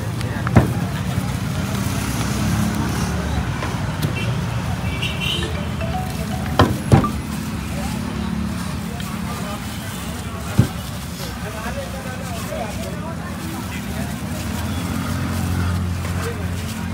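Busy street background of traffic hum and distant chatter, broken by a few sharp knocks: one just after the start, two close together around the middle, and one a few seconds later.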